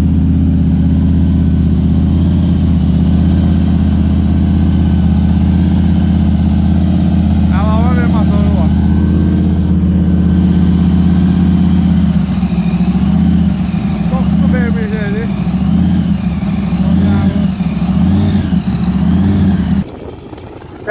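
Big supercharged V8 of a classic muscle car, its blower standing up through the hood, running loud and steady as the car pulls slowly away. About twelve seconds in, the engine note starts to rise and fall in a lumpy rhythm about once a second.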